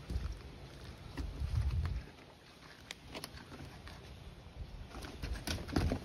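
Low rumbling and faint scattered clicks, then in the last second a cluster of sharper clicks and rustling as a cast net with a weighted lead line is swung into a throw.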